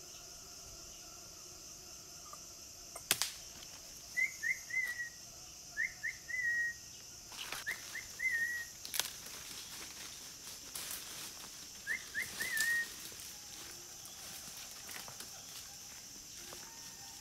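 A single sharp crack about three seconds in, a scoped air rifle being fired, then a forest bird calling four times, each call three quick whistled notes, over a steady high insect drone.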